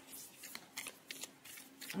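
A deck of tarot cards being handled and shuffled: soft, irregular card flicks and rustles.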